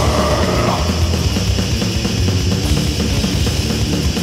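Old-school death metal recording: heavily distorted guitars and bass over fast, dense drumming.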